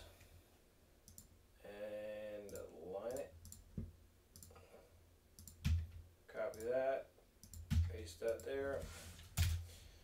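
Scattered clicks of a computer mouse and keyboard while a spreadsheet is being edited, some with a dull knock on the desk, and a few short bits of quiet talk in between.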